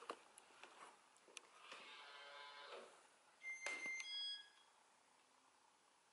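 Near silence: faint room tone with a soft rustle, then a brief cluster of high, steady chirping tones with a click about three and a half seconds in.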